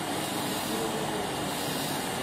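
Electric endodontic motor driving a rotary orifice-opener file in a contra-angle handpiece: a steady, even running sound while the file brushes against the canal's outer wall.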